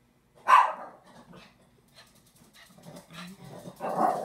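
A small dog barks once, sharply and loudly, about half a second in, followed by fainter low noises from the dog.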